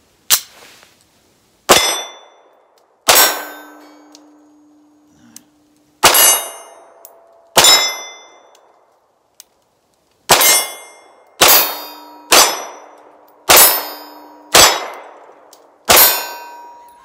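SAR B6C 9mm compact pistol firing about eleven shots spaced one to three seconds apart, with Tula steel-cased ammunition. After several hits, steel targets ring with a lingering metallic tone. Every round fires and cycles, with no light primer strikes from the hard-primered steel-cased ammunition.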